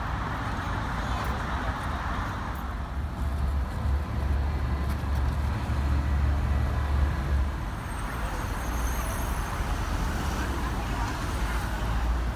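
Street traffic: cars passing on the road, a low rumble that swells between about three and seven seconds in and then eases.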